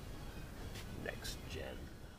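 Soft, indistinct speech close to a whisper, a few short murmured sounds, over a steady low hum.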